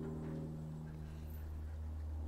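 Quiet room background with a steady low hum and no distinct events.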